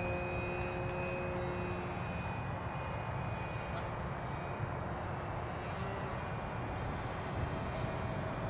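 A distant aircraft motor droning steadily over outdoor background noise, with faint steady tones that fade out about two seconds in.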